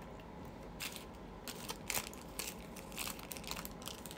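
Something crunchy being chewed close to the microphone: irregular crisp crunches, louder around two and three seconds in.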